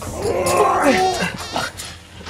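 A person's drawn-out wordless groan, wavering up and down in pitch for about a second, then fading.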